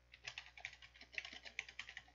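Computer keyboard typing: a quick, irregular run of faint keystrokes that starts a moment in.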